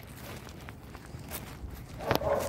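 A few faint, irregular footsteps.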